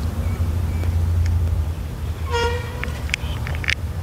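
A vehicle horn gives one short toot a little past halfway, over a steady low rumble, with a few light clicks near the end.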